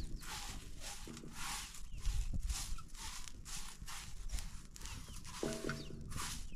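Straw hand-whisk sweeping dark roasting pieces around a large metal pan, a rhythmic scratchy rustle at about two strokes a second.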